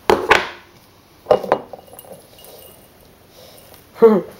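Knocks and clinks of a glass mason jar and a plastic blender cup being handled on a countertop: two sharp knocks at the start, another pair a little over a second in, then faint light tapping.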